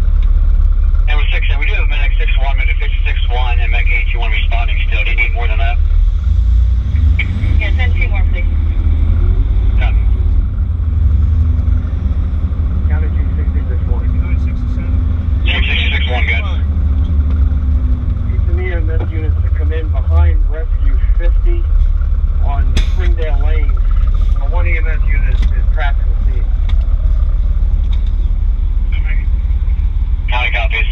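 Fire apparatus diesel engine running with a steady low rumble, overlaid by several stretches of indistinct voices and a slow rise and fall in engine pitch in the middle.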